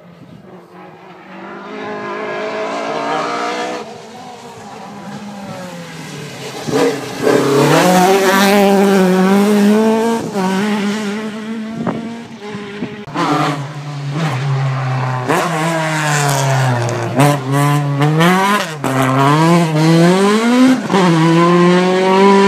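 A rally car's engine approaching at speed, getting louder, its revs rising and dropping again and again through gear changes and throttle lifts, with a few sharp cracks along the way.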